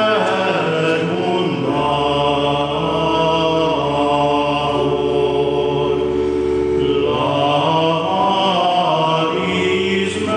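A choir sings sacred chant in long held notes, with several voices sounding together. The notes change about two seconds in and again about seven seconds in.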